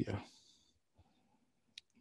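The end of a spoken word, then quiet with a faint tick about a second in and a single sharp, short click near the end: a stylus tip tapping on a tablet screen while handwriting on the slide.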